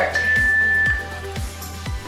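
One long, steady high beep from an interval timer, marking the start of a work interval. Background music with a steady kick drum about twice a second runs underneath.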